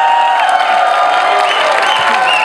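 A large crowd cheering and applauding, with many voices shouting and whooping over the clapping.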